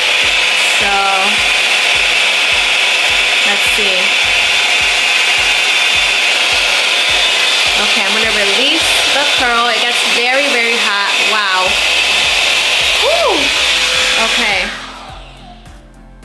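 Revlon One Step Blowout Curls hot-air curling wand blowing steadily with hair clamped around its barrel. It is switched off near the end.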